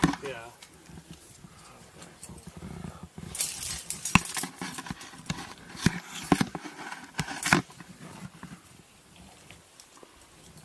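Close-up rock-climbing noises: hands and shoes scuffing and scraping on loose conglomerate rock, with a few sharp clicks and knocks of climbing gear between about four and seven and a half seconds in.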